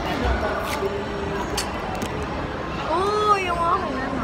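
A plastic boba straw is stabbed through the sealing film of a milk tea cup, a dull thump near the start, over steady café background noise. Near the end comes a short wordless vocal sound that rises and falls in pitch.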